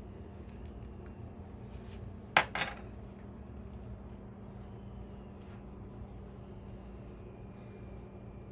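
Two quick clinks of kitchen utensils about two and a half seconds in, over a steady low hum.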